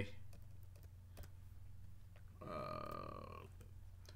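A few faint computer keyboard clicks as text is deleted. About two and a half seconds in comes a steady, roughly one-second vocal sound from the man, like a low drawn-out 'uhh' or burp.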